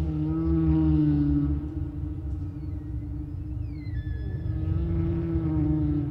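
Humpback whale song: a long low moan sliding down, then held low moans, with higher calls sweeping downward in pitch through the middle, over a low underwater rumble.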